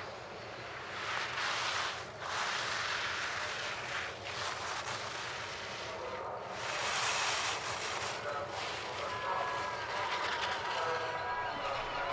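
Ski edges carving and scraping on hard-packed race snow: a steady hiss that swells and fades with the turns, strongest about seven seconds in. Faint distant voices come in during the last few seconds.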